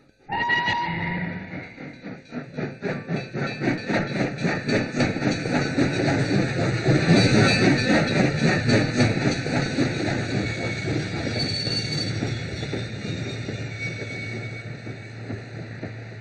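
Steam locomotive: a short whistle as the sound begins, then rhythmic chuffing that swells and gradually fades as the train passes.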